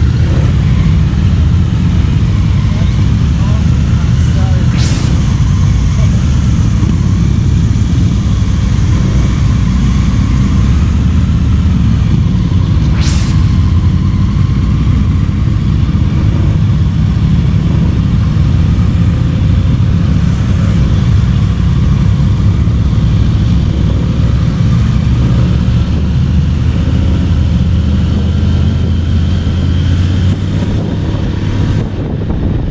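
Motor scooter and motorcycles riding in a line at low speed, their engines running as a steady low rumble heard from the rider's own Honda ADV 150 scooter. Two brief sharp sounds cut through, about five and thirteen seconds in.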